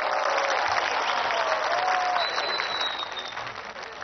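Large audience applauding, the clapping steady at first and then thinning out over the last second or so.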